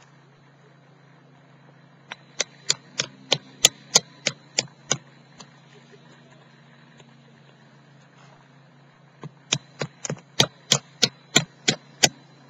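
Two runs of sharp wooden knocks, about three a second, as firewood is chopped or split by a campfire: about ten strikes a couple of seconds in, a pause, then about nine more near the end.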